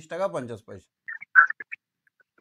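A man speaking Bengali for under a second. It is followed by a few brief high-pitched sounds, the loudest about one and a half seconds in.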